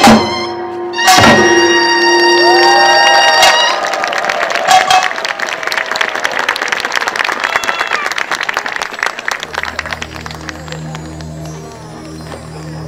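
A Korean pungmul folk percussion band ends its piece with a final hard stroke about a second in, and a gong rings out for a couple of seconds. The audience then applauds for several seconds, the clapping thinning out toward the end.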